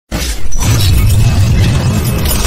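Cinematic intro sound effect: a sudden loud hit with a glassy shattering crash over a deep bass rumble, a second hit following about half a second in.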